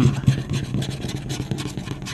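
Scratch-off lottery ticket being scraped rapidly, the tool rasping the coating off in quick back-and-forth strokes.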